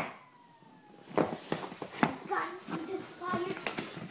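A faint fire truck siren wailing, its pitch sliding slowly downward. From about a second in it is joined by a run of knocks and taps on a hardwood floor and a young child's fussing voice.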